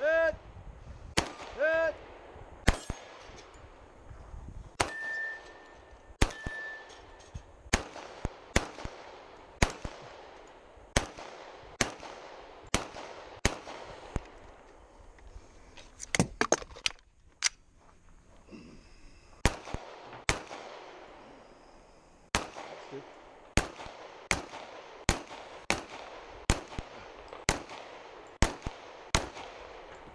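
Pistol fired in a steady string of about thirty shots, roughly one a second, with a quick cluster partway through and a couple of short pauses. Steel targets ring briefly after the hits near the start.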